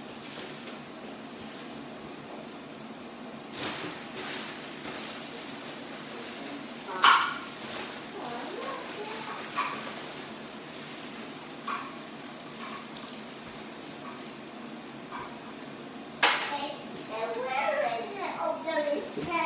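A few short knocks and clatters of household objects handled at a table, one much louder than the rest about seven seconds in, over a low steady background murmur; brief voices come in near the end.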